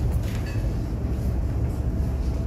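Steady low rumble of background noise in a large hall, with no distinct events.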